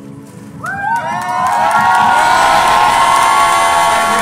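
Small crowd cheering and whooping, breaking out suddenly about half a second in and staying loud and full, with many voices shouting over each other, over soft keyboard music.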